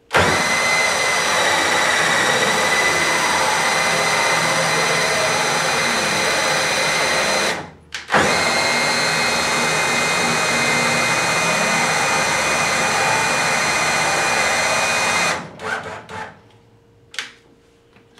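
Cordless drill spinning a CNC router's X-axis lead screw, driving the aluminium gantry along its rails: a steady, fast motor whine that runs about seven and a half seconds, stops briefly, then runs about seven seconds more as the gantry is driven back. A few short knocks follow near the end.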